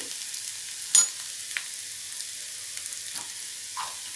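Scrambled egg and cluster bean stir-fry sizzling steadily in a nonstick pan on a gas stove. A single sharp click about a second in and a few fainter ticks later stand out over the hiss.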